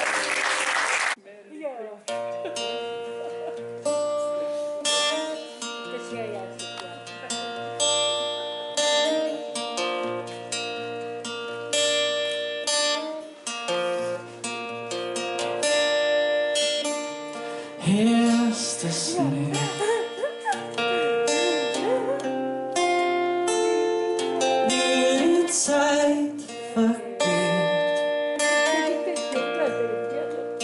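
An acoustic guitar is played fingerstyle as a solo instrumental: separate picked melody notes over a repeating low bass note. It starts about two seconds in, after a short burst of noise and a brief lull.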